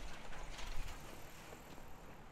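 Quiet city street ambience with a few faint short clicks and knocks, a little louder in the first second.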